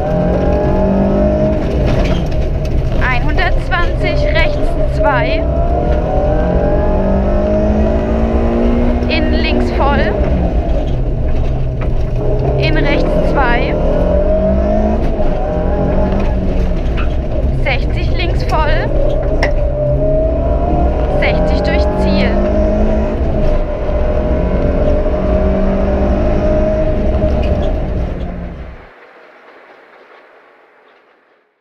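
Suzuki Swift Sport rally car engine heard from inside the caged cabin, driven hard on a stage. The revs climb and drop repeatedly through gear changes and lifts. The sound cuts off abruptly near the end.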